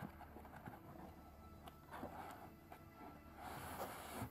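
Near silence with faint, scattered rustles and light scrapes of a cardboard product box being handled and slid out of its sleeve.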